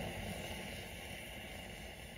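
Potassium permanganate and glycerin mixture burning in a small crucible as a chemical fuse: a steady flame noise without distinct pops, slowly growing fainter as the flame dies down.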